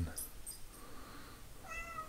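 A domestic cat gives one short meow near the end.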